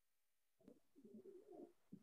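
Near silence, with a faint low cooing call from a dove, starting a little over half a second in and lasting about a second.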